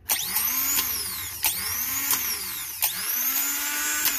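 Rebuilt starter motor from a 2006 Mitsubishi Outlander, fitted with new brushes and a new Bendix drive, spinning freely on the bench with its solenoid jumped so the pinion throws out and turns. It makes a high whine whose pitch swells and falls about every second and a half, with sharp clicks along the way. It sounds good, a sign that the rebuild works.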